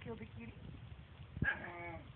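Dog making its strange moaning 'talking' noises, a short call at the start and a longer, louder one about one and a half seconds in, slightly falling in pitch: a jealous protest at the cat being petted.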